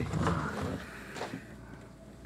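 Dry-erase markers writing on small whiteboards, quiet, with a light tap a little over a second in.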